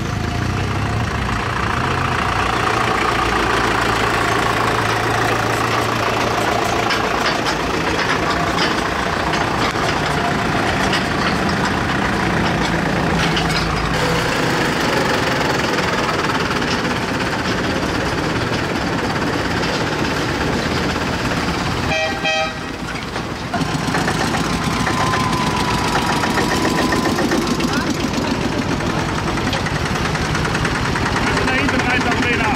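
Vintage tractor engines running as the tractors drive past one after another, their low engine note changing as each one goes by.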